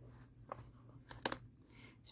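Faint rustle and a few short crunchy ticks from a rice-filled flannel pouch being handled and hand-stitched, the rice shifting inside the fabric as it is turned.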